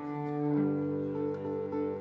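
Cello bowing long, low sustained notes, stepping up in pitch about half a second in, under a fingerpicked acoustic guitar, in a live folk band.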